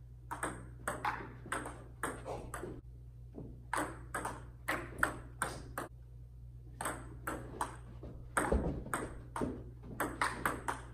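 Table tennis rally: the ball clicks sharply off the paddles and the table in quick alternation, two to three clicks a second, with short pauses about three and six seconds in. A low thump comes about eight and a half seconds in.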